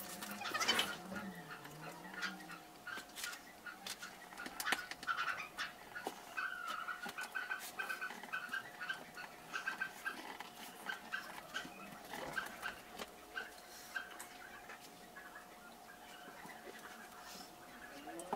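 Faint, sped-up clicks and light scrapes of screws and fittings being handled and set into a desktop panel, over a faint steady hum.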